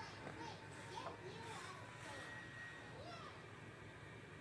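Faint children's voices in the background, high-pitched and rising and falling, over a steady low hum.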